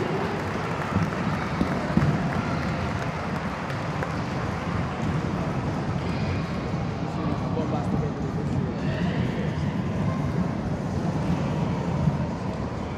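Many children's inline skates rolling and striding across a wooden sports-hall floor, a steady rolling rumble, under indistinct children's voices echoing in the hall.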